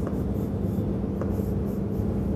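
Chalk writing and drawing on a chalkboard: soft scratching strokes over a steady low room hum.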